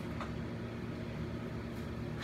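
Steady low hum, with a faint click about a quarter of a second in.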